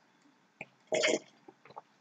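A short, quiet burp-like throat and mouth noise about a second in, with a few faint mouth clicks around it, from a person eating and drinking.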